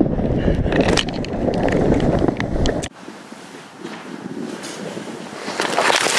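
A cracked sled sliding fast down a snowy slope: a loud rushing scrape of snow, with wind buffeting the microphone, that cuts off abruptly about halfway through. It stays quieter after that, and a second rush of scraping noise starts near the end.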